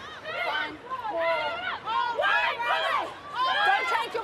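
Rugby players shouting short calls on the field during a driving maul, one call after another.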